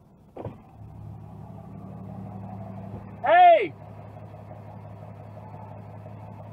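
Low, steady engine and road hum of a car heard from inside its cabin as it slows to a stop, with a short click about half a second in. About three and a half seconds in, a person gives one loud, short shouted call.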